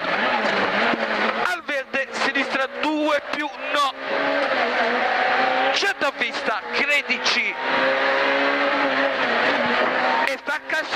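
Peugeot 106 A5 rally car's engine at racing revs, heard from inside the cabin, its pitch rising and dropping as the car accelerates and slows for a bend.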